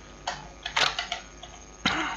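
Computer keyboard being typed on: about five separate keystroke clicks spread over two seconds, over a faint steady electrical hum.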